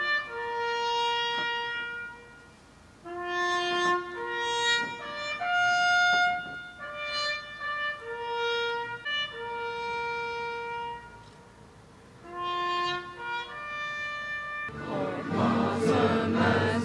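A slow solo trumpet melody, one held note at a time in separate phrases, pausing twice.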